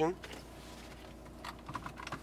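A few light clicks about one and a half seconds in, from a hand handling the car's centre-console controls at the gear selector, over a low steady hum.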